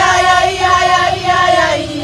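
A group of women singing a protest song together, loud, with several voices on long held notes that sag slightly in pitch near the end.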